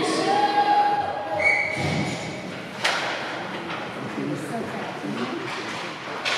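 Large-hall ice rink ambience with faint, scattered spectator voices. About three seconds in there is a single sharp knock.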